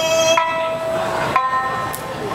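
Okinawan folk song performed live on sanshin with a man singing. His long held sung note fades out near the start, then the sanshin is plucked twice, about a second apart, each note ringing on.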